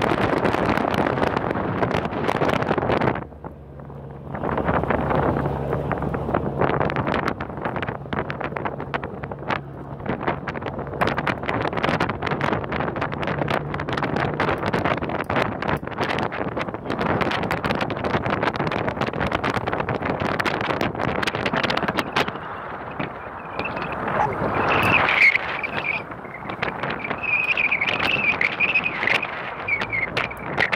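Wind buffeting the microphone over boat engines running. A steady low engine hum runs through the first half, and a high wavering tone comes in over the last several seconds.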